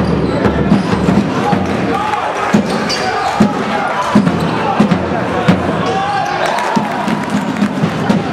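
A basketball bouncing on a hall court, with irregular low thumps and sharp knocks, amid voices in the hall.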